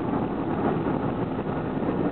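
Steady road and wind noise of a car cruising at highway speed, an even rumble and hiss.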